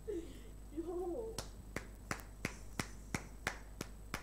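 A run of sharp hand claps, about three a second, starting a little over a second in.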